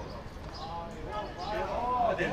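Distant voices shouting and calling out across a football pitch during play, starting about half a second in, over a steady outdoor background hiss.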